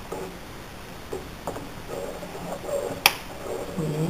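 A metal spoon stirring coffee grounds into hot panela water in an aluminium olleta, with a few light clicks against the pot and one sharp clink about three seconds in.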